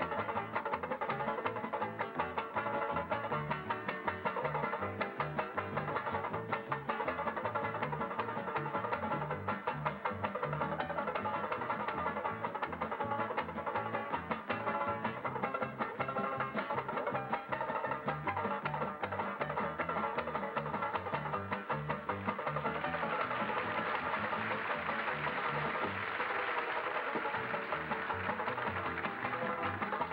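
Banjo played fast with a pick, a rapid stream of strummed and picked notes over a steady low beat. It grows brighter and fuller in the last quarter.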